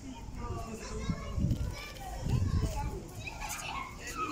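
Children's voices in the background: high chatter and calls of children playing.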